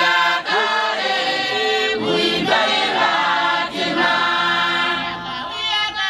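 A congregation of women singing a Shona hymn together unaccompanied, several voices holding long notes and gliding between them.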